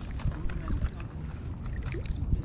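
Wind rumbling on the microphone, with scattered sharp clicks and rustles as a hooked bass is reeled in to the shore; the sharpest click comes near the end.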